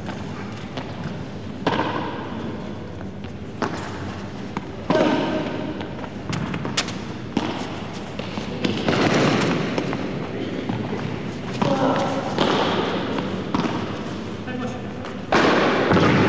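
Padel ball being hit with paddles and bouncing off the court and glass walls: sharp knocks at irregular intervals, over a steady murmur of crowd voices.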